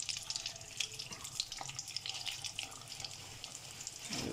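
Hot oil sizzling and crackling steadily around mini potato samosas deep-frying in a wok over a low flame, with a few light ticks as metal tongs turn them over.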